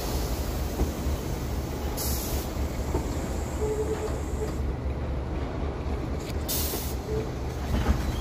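Locomotive-hauled passenger coaches rolling slowly past: a steady low engine drone and wheel rumble on the rails, with two short hisses of air about two seconds in and near the end.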